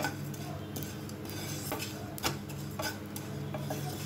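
A spatula stirring whole spice seeds (cumin, fennel, ajwain and fenugreek) around a dry nonstick frying pan, with scattered light scrapes and clicks against the pan as the seeds are dry-roasted.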